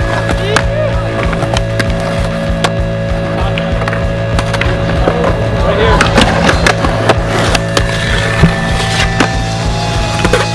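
Skateboard wheels rolling on concrete, with sharp clacks of boards popping and landing and grinding on ledges, over music.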